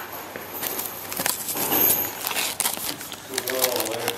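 Plastic wrapping and cardboard rustling and crinkling as a bag of circuit boards is handled in a shipping box, with scattered small crackles and clicks. A voice comes in briefly near the end.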